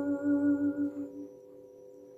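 A woman humming a long held note that fades out a little over a second in, over the steady ringing of a struck metal chime, which hangs on faintly after her voice stops.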